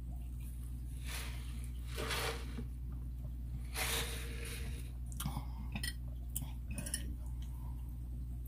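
Soft mouth sounds of chewing and breathing, with a few light clicks in the second half, over a steady low hum.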